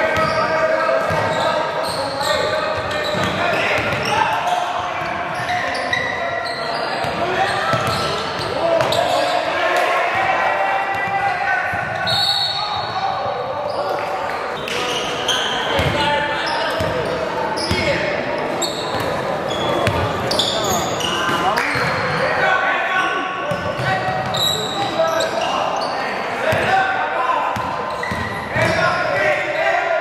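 A basketball dribbling on a hardwood gym floor, with repeated short bounces under shouting players' and spectators' voices that echo in a large gym.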